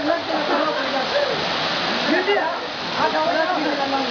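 Waterfall pouring into a rock pool, a steady rush of water, with men's voices calling out over it.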